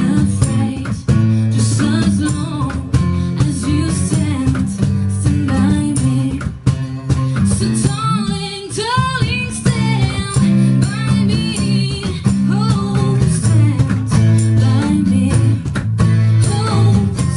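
Live acoustic band playing: two acoustic guitars strumming, a woman singing the melody, and a cajón keeping the beat.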